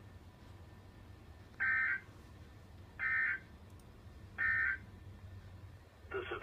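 Emergency Alert System SAME end-of-message data bursts from a NOAA Weather Radio broadcast. Three short bursts of harsh digital warbling, each about a third of a second long and evenly spaced, mark the end of an alert message.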